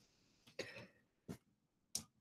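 Near silence broken by three faint, short throat and mouth noises from a speaker close to a headset microphone, the first about half a second in, the others near the middle and at the end.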